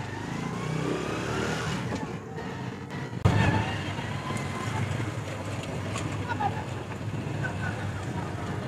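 Small Honda motorcycle engine rising in pitch as it pulls away and gathers speed, then, from about three seconds in, running steadily as the bike rides along.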